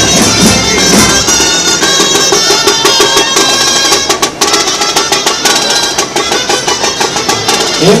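Live band music with wind instruments playing a melody over a regular drumbeat.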